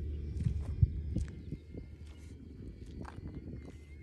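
Low rumble of wind on the microphone, with a few knocks and thumps in the first second and a half.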